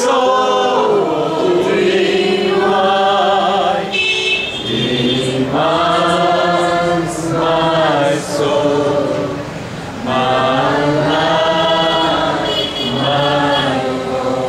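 A small group of voices, a woman's among them, singing a devotional worship song together in long held phrases with short breaks between them.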